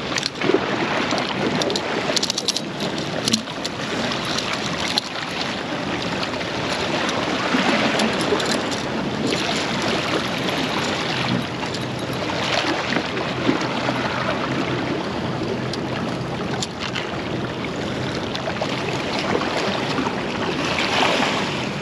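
Waves washing and splashing against the jetty rocks, with wind buffeting the microphone, a steady rushing noise throughout. A few sharp clicks come in the first few seconds.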